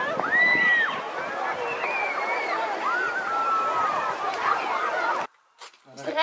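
Hubbub of a busy swimming spot: many distant overlapping voices and children's calls, with one high call that rises and holds about half a second in. It cuts off abruptly near the end.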